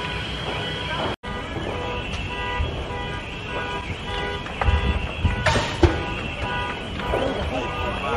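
Car alarms of cars in the burning car park sounding in a steady on-off pulse, over the murmur of onlookers' voices, with a couple of sharp bangs about two-thirds of the way through.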